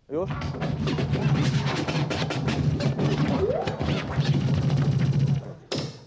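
A DJ's jingle played from the decks: loud music with a fast, dense beat that cuts off abruptly about five and a half seconds in, followed by a brief sharp burst.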